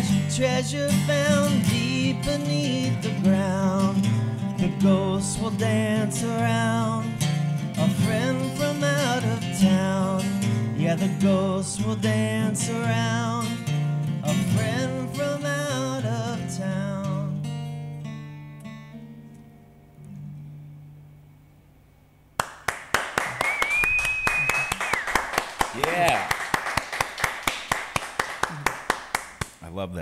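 Male voice singing a folk song over a strummed acoustic guitar; a little over halfway through the singing stops and the last guitar chord rings and fades out. Then clapping starts suddenly, with a brief high call over it.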